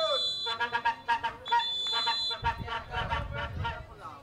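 A referee's whistle sounding in long, steady high blasts, one ending about half a second in and another about a second and a half in, over voices shouting on the pitch.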